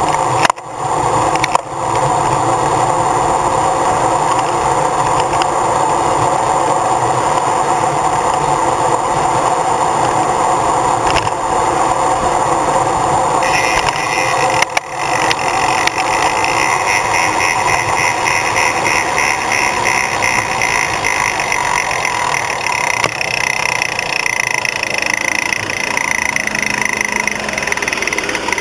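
Road sweeper's engine running steadily close by. A higher whine joins about halfway through.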